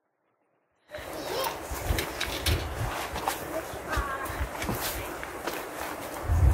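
Footsteps and rustling through garden greenery, with irregular low thumps of wind or handling on the microphone. It starts about a second in, after a near-silent moment.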